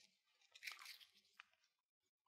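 Near silence: room tone with a faint brief rustle and a small click.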